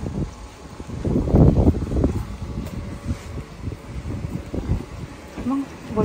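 Wind buffeting a handheld camera's microphone: an irregular low rumble that swells loudest between about one and two seconds in.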